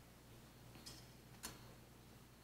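Near silence broken by two light clicks about half a second apart, the second sharper, as metal offering plates are lifted and handled.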